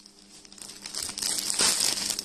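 Clear plastic garment packaging crinkling as a packed suit is handled, starting faint and growing louder from about a second in.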